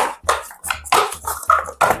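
Paper cups being snatched up and stacked in a hurry: a quick, irregular run of light clacks and scrapes as the cups are dropped into one another and knocked on the tabletop, about ten in two seconds.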